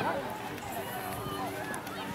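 Faint voices of players and spectators calling out around a soccer field, over a steady low hum.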